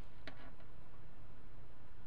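Two or three short, faint clicks near the start from fingers handling a small glass Nixie tube keychain, over a steady low background hum.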